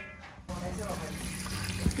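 Dry wine poured in a stream into a pan of chopped onion, green pepper and tomato paste, a steady splashing pour that starts about half a second in.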